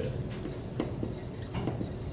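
Dry-erase marker writing on a whiteboard: a run of short, separate pen strokes across the board.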